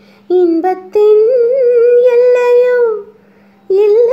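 A high voice singing solo without instruments: a short phrase, then one long wavering note held for about two seconds that glides down at its end, and the singing starts again near the end. A steady low hum runs underneath.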